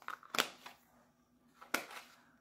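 A few light clicks and knocks from handling small wax-melt packages. A quick cluster comes in the first half-second and a single click near the end, over a faint steady room hum.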